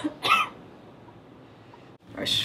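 A person coughs once, sharply, near the start.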